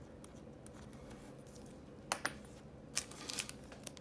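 A pen scratching faintly as it writes on a paper sticky note, then a few sharp clicks and light plastic rattling as a pen refill in its plastic packaging is picked up and handled.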